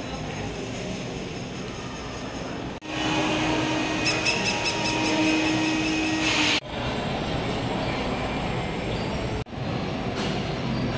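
Shopping-mall interior ambience: a steady background wash of air handling, footsteps and distant activity. It is broken by abrupt cuts about three seconds in, near seven seconds and near the end. Between the first two cuts a louder stretch carries a steady whine with fast high ticking over it, from an unidentified machine or ride.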